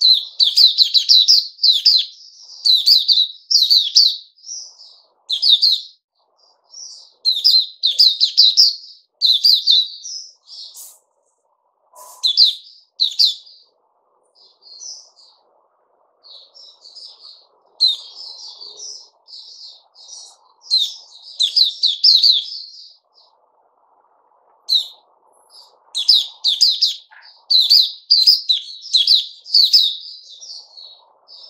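White-eye (sold as 'puteh raja') singing a fast, high twittering song in phrases of a few seconds with short pauses, sparser and softer in the middle and dense again near the end.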